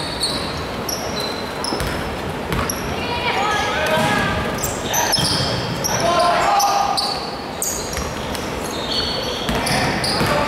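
Basketball game in a large, echoing gym: the ball bouncing on the hardwood court, sneakers squeaking in short high chirps, and players calling out to each other.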